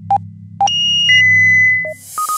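Electronic intro sound design: a couple of short synth beeps, then a long steady high beep that steps down in pitch and holds for about a second, over a low electronic hum.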